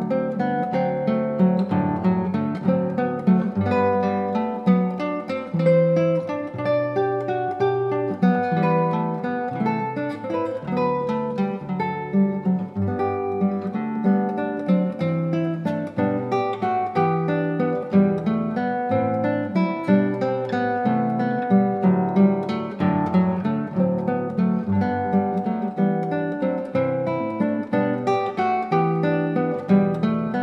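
Solo classical nylon-string guitar played fingerstyle: a steady, unbroken flow of plucked notes over a moving bass line.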